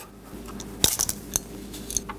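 A few small metallic clicks and scrapes as a 14-gauge solid copper wire is twisted and pulled out of the push-in (stab-in) terminal on the back of a cheap outlet, the loudest click a little under a second in. The wire comes out easily without a screwdriver in the release slot, a sign of the weak, uncertain contact of the stab-in connection.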